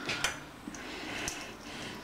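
A couple of faint clicks from kitchen utensils being handled at the counter, over low room noise.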